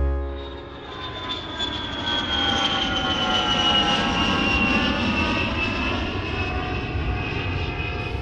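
Airplane passing overhead: a steady engine rush with a high whine that slowly falls in pitch, swelling in after the first second.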